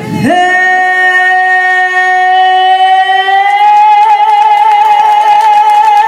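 A female singer holding one long note, steady at first, with vibrato coming in about halfway through.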